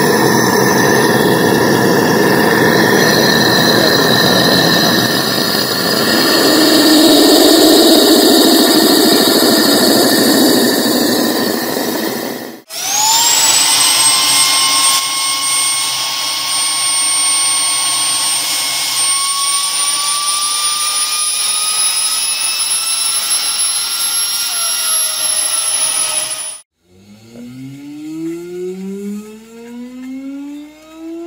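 Small bladeless Tesla (boundary-layer) turbine spinning at high speed. First there is a loud rushing hiss of the driving flow with a whine. After a sudden cut a little before halfway comes a clear high whine that slowly climbs in pitch and drops near the end, and after another cut a quieter whine sweeps upward as the turbine spins up.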